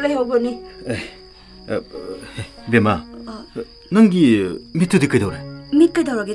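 Crickets chirring as one steady high note, with short spoken phrases breaking in over them every second or so.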